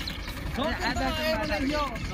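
Powertrac tractor's diesel engine idling steadily as a low rumble, with faint voices talking over it.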